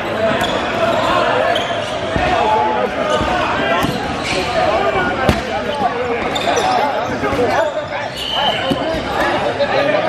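Indoor dodgeball play: many players' overlapping shouts and chatter echoing around a gym, with sharp thuds of 8.5-inch rubber dodgeballs hitting the hardwood floor and players, the loudest about five seconds in.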